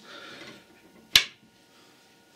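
A single sharp click about a second in as a 12 V spotlight is switched on as a load on an Xbox 360 power supply, after a soft rustle at the start. Beneath it the power supply's small cooling fan gives a faint steady hum.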